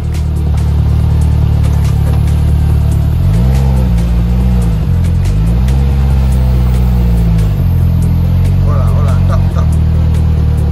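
Loud, deep bass-heavy music with two long sliding low notes, one about three seconds in and a longer one about five seconds in, over the running of a Polaris Slingshot three-wheeler.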